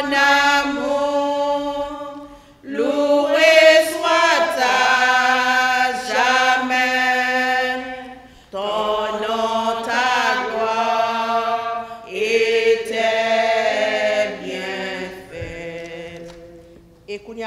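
A woman singing a slow hymn in French without accompaniment, in long held phrases with short breaks between them.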